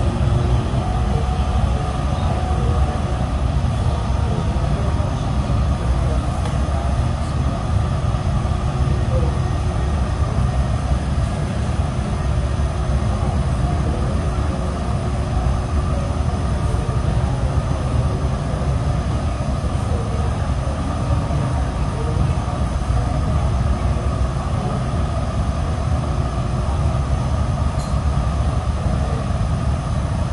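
Steady roar of a gas-fired glory hole as glass on a blowpipe is reheated in its opening, a deep, even rush that does not change.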